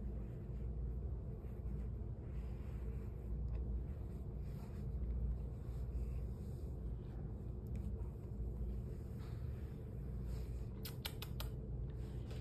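Domestic cat purring steadily, a low continuous rumble, while its head and neck are scratched. A few quick light clicks of scratching come near the end.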